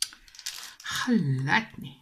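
A sharp click, then small plastic clicks and rustling from diamond-painting work: the plastic drill tray and the canvas's clear protective film being handled. A short spoken word follows a second in.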